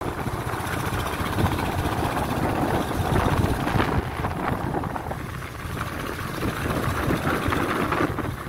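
Royal Enfield Standard 350's single-cylinder engine and exhaust running as the motorcycle is ridden slowly. The engine note swells a little about three seconds in and eases after about five seconds.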